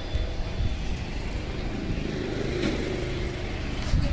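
Steady low rumble of outdoor background noise, with no distinct events.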